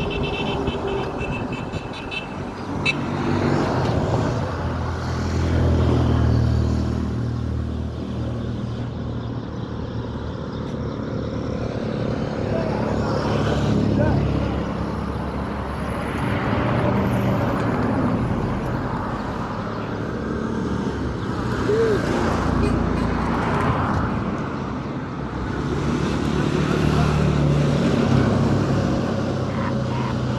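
Outdoor urban street noise: motor traffic rumbling, swelling and easing several times, with voices heard now and then.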